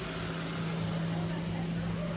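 Steady low hum of an idling truck engine, holding one pitch throughout.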